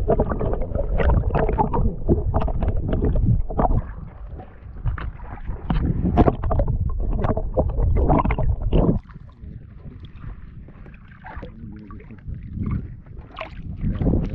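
Sea water sloshing and gurgling around a camera held just below the surface, with many small knocks and splashes. About nine seconds in it turns quieter and muffled for a few seconds, then grows loud again as the camera comes back up through the surface near the end.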